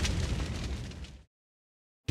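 Title-card sound effect: a dense, rumbling burst like flames or an explosion, fading away over about a second and then cutting off to dead silence.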